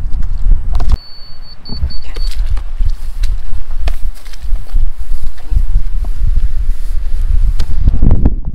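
A short run of high electronic beeps from a surveying transit's receiver, signalling the reading, about a second in. Under it runs a loud, uneven low rumble with scattered knocks.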